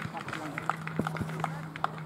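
Footballers' voices calling and talking on the pitch, with a couple of sharp knocks about a second in, over a steady low hum.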